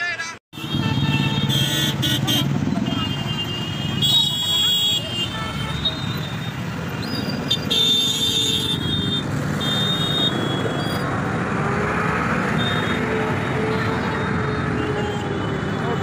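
Roadside street noise: traffic rumble and a babble of voices, with short high-pitched tones sounding on and off in the first half.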